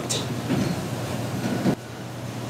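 Steady rumble of a candlepin bowling alley: balls rolling on the wooden lanes and pinsetter machinery running. It stops abruptly near the end.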